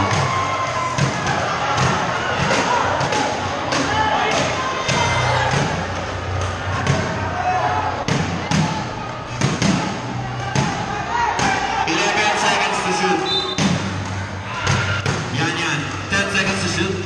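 A basketball bouncing and thudding on a concrete court in play, many sharp thuds at uneven spacing, over steady crowd voices and shouts.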